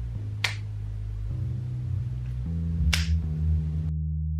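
Two sharp clicks about two and a half seconds apart from a plastic marker cap being handled, over background music with a low, steady bass.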